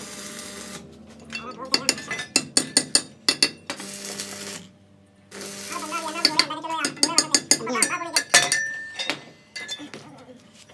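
Hand hammer striking rivets into the sheet-steel corner of a brick mold: two quick runs of light, ringing metal-on-metal strikes, several a second.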